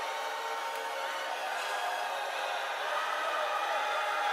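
Steady ambient noise of a busy competition hall with the bass cut away, with faint distant voices in it.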